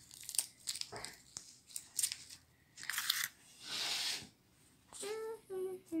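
Plastic wrapping crinkling and tearing as it is pulled off a bread roll by hand: a run of small crackles, then two longer rustling tears about three and four seconds in. A voice hums "mm-hmm" near the end.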